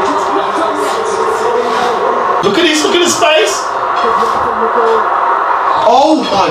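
Televised football match coming through the TV: a commentator talking over steady stadium crowd noise.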